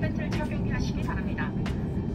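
Steady low rush of an Airbus A350's cabin in flight, with a crew announcement in Korean over the cabin PA.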